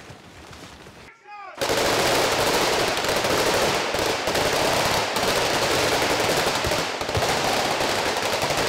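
Loud, sustained automatic gunfire, many shots running together, starting abruptly about a second and a half in.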